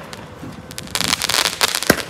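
Fireworks going off: a dense stretch of crackling starts about a second in, ending in a single sharp bang near the end.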